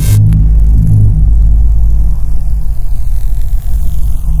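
Logo intro music: a loud, deep, steady bass drone, with a pulsing bass figure in the first second and a faint high sweep falling slowly over the rest.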